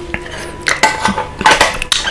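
A few short, sharp clicks and light clinks close to the microphone, about four in two seconds.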